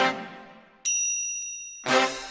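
Instrumental backing-track intro: a chord stab dies away, then about a second in a single high, bright bell-like ding rings for about a second, and loud chord stabs come back in near the end.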